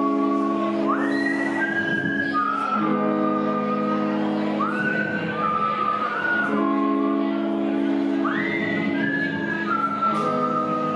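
Live rock band (electric guitar, bass, drums and keyboard) playing an instrumental passage: sustained chords under a high lead line that slides up into long held notes, about once every four seconds.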